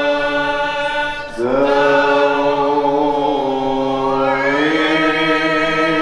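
Men's voices chanting a devotional maulid qasida in maqam rast, holding long notes with a brief breath about a second in, after which the pitch slides up and climbs again past the middle.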